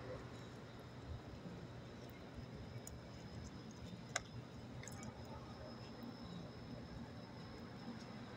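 Mostly quiet, with faint chewing close to the microphone and a few soft clicks, the sharpest about four seconds in.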